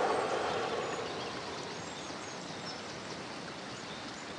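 Outdoor ambience: a steady, soft background hiss with a few faint bird chirps, and a brief swell of noise in the first second.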